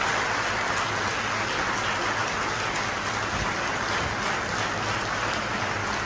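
Audience applause, steady and unbroken.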